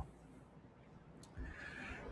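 Near silence, then a faint low thump about one and a half seconds in, followed by faint hiss.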